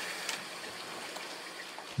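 Steady, even hiss of running water, low in level, with a faint wet tap just after the start.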